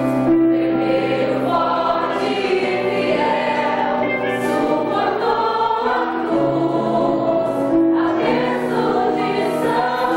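Church choir of young men and women singing a worship song together, holding each note for a second or more, with one woman on a microphone leading.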